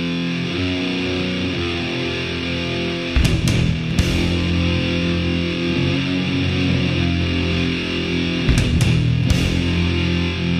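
Heavy metal song: a distorted electric guitar riff, with the low end filling out as bass and drums come in about three seconds in. Sharp drum hits fall just after the band comes in and again near the end.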